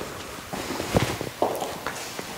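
Footsteps on a luxury vinyl plank floor: a few soft steps about half a second apart.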